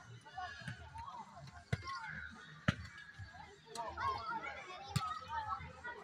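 Children's voices chattering in the background, with three sharp thuds of footballs being struck, the loudest a little under three seconds in.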